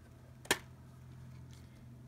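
A single sharp click as a metal Blu-ray steelbook case is snapped open by hand, over a faint steady low hum.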